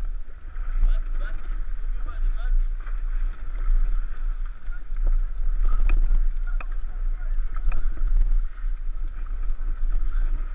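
Raft paddles dipping and splashing in river water, with water lapping against the raft and wind rumbling on the microphone. A few sharper splashes come in the middle.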